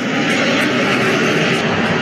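Steady rushing background noise, with no words, from a recorded voice message played back through a smartphone speaker.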